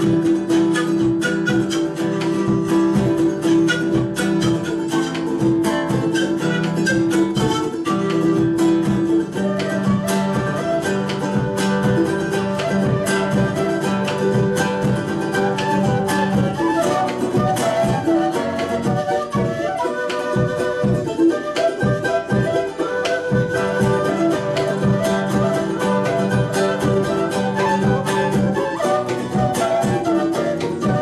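Latin American folk ensemble playing an instrumental: a wind melody on panpipes and flute over strummed plucked strings and a drum. Long held notes in the first several seconds give way to a quicker melody.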